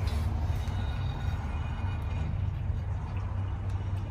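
Steel axle shaft of a GM heavy-duty full-floating rear axle being slid out by hand through the axle tube, a faint scraping over a steady low hum.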